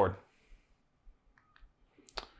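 The end of a spoken word, then a quiet pause holding a few faint, short clicks before speech starts again.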